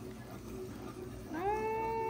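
A single long, high-pitched drawn-out call, from a young child or a cat, starts about a second and a half in. It rises at the onset, then holds one steady pitch, and carries on past the end.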